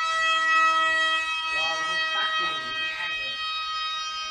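Mini remote-control model plane in flight, its electric motor and propeller giving a steady high whine; the lower tones in it drop out a little over a second in.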